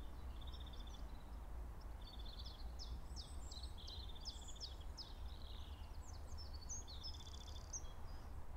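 Outdoor ambience: small birds chirping, with several short, quick trills and sweeping chirps, over a faint steady low rumble.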